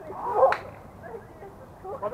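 A sharp slap of hands striking a beach volleyball about half a second in, together with a brief shout from a player.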